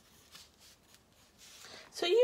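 Faint scratching of a pencil drawn lightly across paper, a few short strokes as a face outline is sketched.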